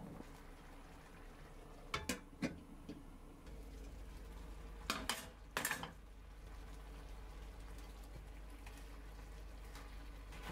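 Tteokbokki sauce simmering quietly in a frying pan, with a few sharp clacks and knocks as pieces of rice cake and other ingredients are dropped in and a utensil touches the pan: two about two seconds in and a small cluster around five seconds.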